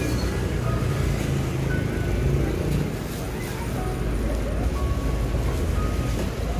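Steady low rumble of road traffic, with light crinkling of a thin plastic bag as bread rolls are packed into it.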